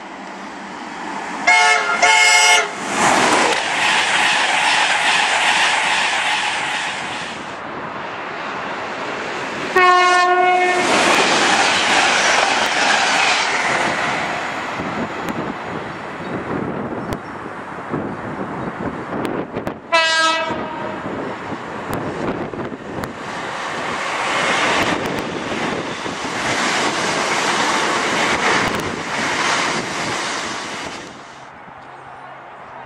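Train horns sound three times: a two-note blast near the start, then single blasts about ten and twenty seconds in. Each is followed by the loud, steady noise of a train passing.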